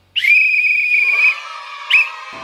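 Whistle sound effect on a title card: one loud, high whistle tone that slides in after a moment of silence, wavers slightly and holds for about a second. Lower steady tones carry on under it, and a short second whistle chirp comes near the end.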